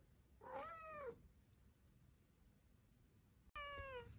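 Domestic cat meowing twice: a rising-then-falling meow under a second long about half a second in, and a shorter, falling meow near the end.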